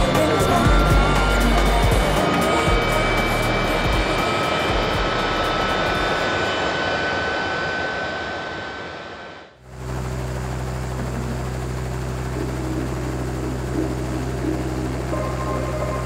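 Helicopter running on the pad: turbine whine over rotor and engine noise, fading out about nine and a half seconds in. A steady low drone with music follows.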